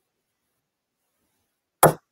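A single firm hammer tap on a steel letter stamp near the end, driving a letter into a metal cuff blank taped to a metal block. It is a firm tap rather than a hard bang, since a hard hit also presses the stamp's round edge into the metal.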